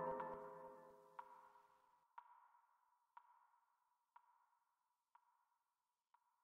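The music fades out in the first second. Then a short, high electronic beep repeats about once a second, six times, each with a brief ringing tail and each fainter than the one before.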